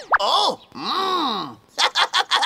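A cartoon character's wordless vocal sounds: a short rising-and-falling murmur, then a longer groan that swells and sinks in pitch, like someone mulling over a problem. A quick sliding tone sounds at the very start.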